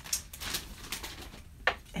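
Faint rustling of papers and a clear plastic packaging bag being handled, with one short sharp sound about three-quarters of the way through.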